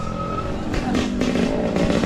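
Dirt bike engine running as the bike pulls away, its note rising a little partway through.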